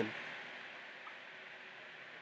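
A steady, faint hiss with no grinding contact or other distinct events in it.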